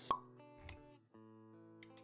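Intro jingle for an animated logo: held synth-like music notes with a sharp pop effect just after the start, the loudest sound, then a soft low thud and a few quick clicks near the end.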